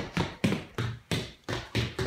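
Quick, uneven series of light knocks and taps, about four or five a second: sneaker steps of Heelys wheeled shoes on a hard floor.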